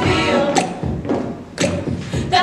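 Female a cappella group singing over a deep thumping beat: three heavy thumps, the voices thinning out between the second and third before a loud hit and sung chord near the end.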